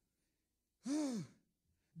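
A man sighs once, a short voiced breath out about a second in, its pitch rising and then falling.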